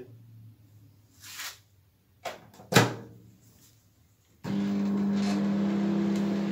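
A brief rustle, then two sharp knocks as the microwave oven door is shut. About four and a half seconds in, the Dawlance microwave oven starts running on high power with a steady low hum.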